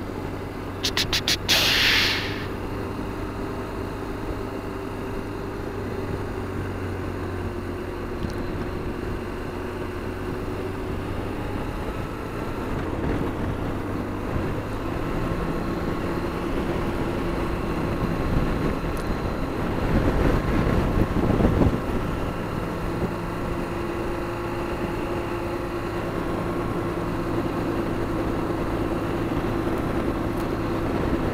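BMW R1200GSA flat-twin engine running at cruising speed with wind and road noise, its note shifting about halfway through. A few sharp clicks and a short rush come about a second in, and a louder rush of noise comes about two-thirds of the way through.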